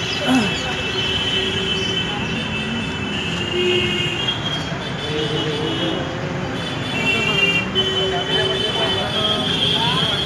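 Busy street noise: traffic and people's voices in a steady background din, with long, high steady tones coming and going throughout.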